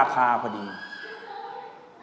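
A man lecturing into a microphone, his last word drawn out into a long, wavering tone that fades away.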